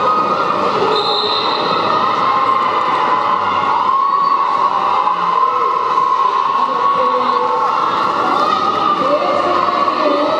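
Many quad roller skates rolling on a wooden sports-hall floor, giving a steady rumble, under the continuous hubbub of spectators' and players' voices in a reverberant hall.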